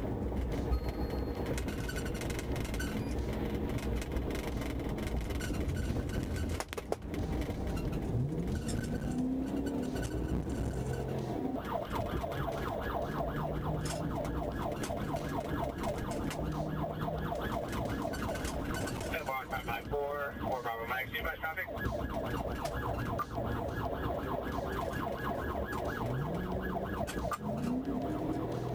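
A police car's siren sounds over steady engine and road noise in a high-speed pursuit. From about twelve seconds in it becomes a fast, rapidly pulsing warble.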